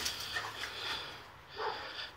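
Boxer dogs breathing hard and moving about during play, with a short louder huff of noise near the end.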